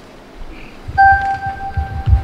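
A single steady organ note held from about a second in, giving the pitch for the sung acclamation that follows. Low thuds sound under it.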